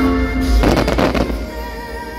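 Fireworks show soundtrack music over aerial fireworks. A burst of crackling comes about half a second in and lasts under a second, with a deep boom under it.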